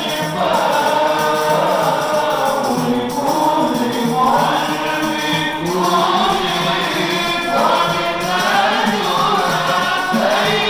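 A group of men sing a Maulid praise chant together into microphones, accompanied by handheld frame drums with jingles.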